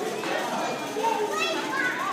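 Crowd of young children playing, their high voices talking and calling out over one another in a continuous hubbub.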